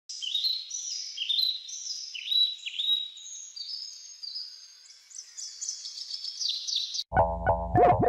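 Birds chirping: many overlapping high, quick notes falling in pitch for about seven seconds. Near the end they cut off abruptly as electric guitar and bass music starts.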